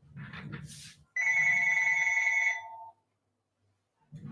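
Telephone ringing: one ring of about a second and a half, a steady chord of several tones that trails off near the three-second mark. It follows a brief shuffle of movement.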